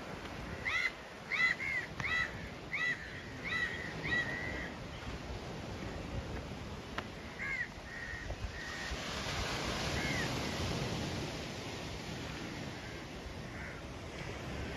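A bird calls about seven times in quick succession, then twice more, over the steady wash of small waves breaking on a sandy beach.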